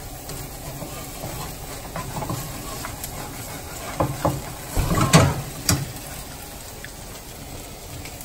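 Egg omelette cooking in a skillet on a gas stove with a steady low hiss, and a slotted plastic spatula knocking and scraping against the pan a few times about halfway through.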